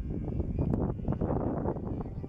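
Gusty wind blowing across the microphone, with a radio-controlled model airplane's engine running faintly in the air.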